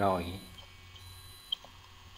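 The end of a spoken phrase, then a low steady hum with one short, faint click about a second and a half in.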